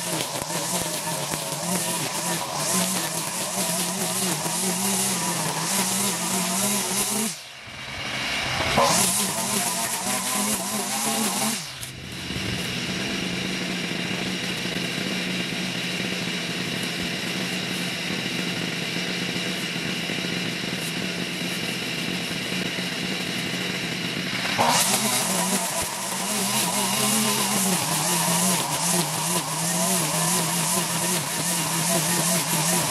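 Petrol string trimmer (weed eater) engine running at high speed while its line cuts overgrown grass. A little after seven seconds the engine briefly drops and revs back up, and it dips again around twelve seconds. It then runs at an even, steady note until about twenty-five seconds in, when the cutting sound returns.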